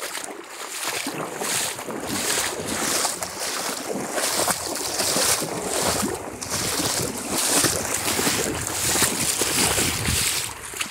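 Legs wading through shallow lake water, each stride splashing and sloshing, the strides coming a little under a second apart.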